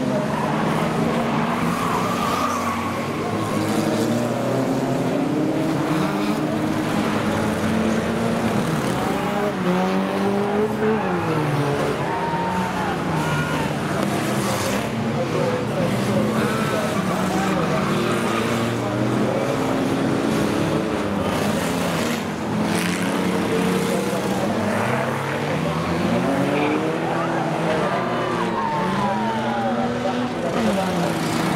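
Several 3-litre banger racing cars revving hard at once, their engine notes rising and falling over each other as they spin their wheels, with tyres skidding on the track.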